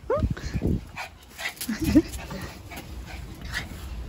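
Small Pomeranian dog giving a few short barks and yips.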